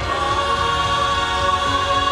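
Mixed church choir of men's and women's voices singing a hymn, holding one long chord that swells slightly as it begins.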